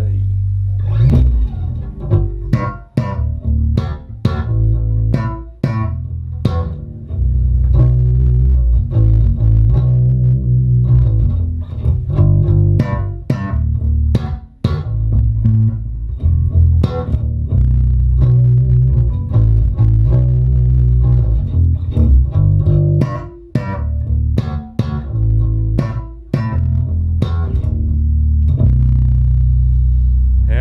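Electric bass guitar played through a Hartke bass amplifier, punchy and loud: deep sustained low notes with repeated plucked attacks, broken by a few brief gaps between phrases.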